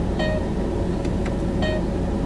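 A song playing on the car stereo with two short plucked notes about a second and a half apart, over the steady low hum of the idling car heard inside the cabin.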